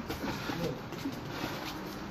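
Sparring in a boxing ring: a few light, irregular knocks of gloved punches and footwork scuffs on the canvas, with a faint hum of a voice near the start.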